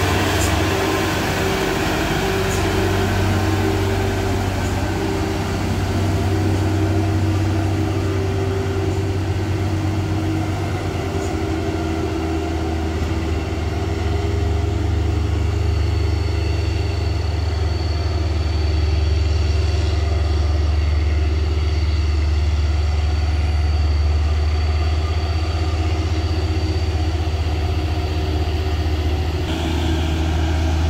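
Heavy diesel truck engines labouring slowly up a steep climb, a steady low engine sound. The low sound grows stronger in the second half as another loaded truck approaches, and a thin high whine joins in about halfway through.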